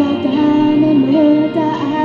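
A teenage girl singing a Japanese pop song through a microphone and PA, her voice holding and gliding between long sung notes over an instrumental accompaniment.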